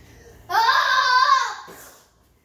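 A young boy's drawn-out vocal sound, about a second long, starting about half a second in and dropping in pitch at the end.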